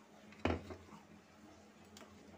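A single short knock of a steel spoon against a stainless steel pot about half a second in, while ground rice is stirred into hot milk for kheer.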